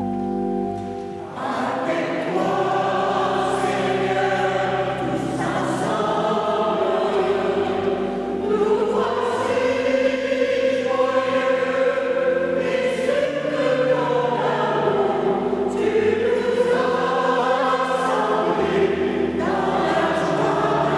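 Church choir singing a hymn at the opening of Mass. The voices come in about a second in, over held instrumental chords with a bass line that changes every couple of seconds.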